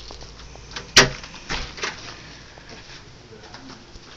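A front door's latch clicking sharply about a second in, followed by two softer knocks from the door as it moves.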